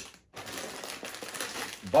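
Crinkling of a foil chip bag being picked up and handled: an uneven rustle lasting about a second and a half.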